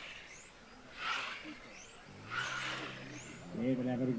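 Electric 1:10 RC touring cars passing on the track, two swells of tyre hiss with brief high-pitched motor whines that glide in pitch as the cars go by, about one second in and again about halfway through. A man's commentary voice comes in near the end.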